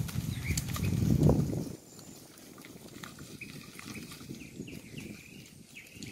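Low rumbling and rustling of wind and tamarind branches for almost two seconds, then a quieter stretch with a few faint high chirps and small clicks.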